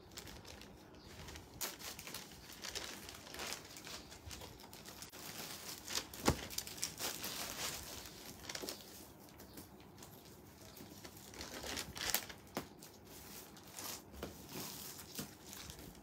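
Plastic bags and clothing being handled: intermittent, fairly faint crinkling and rustling, with a few sharp clicks.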